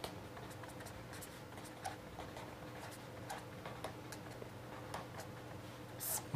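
Marker pen writing capital letters on paper: faint, irregular scratches and ticks of the pen strokes.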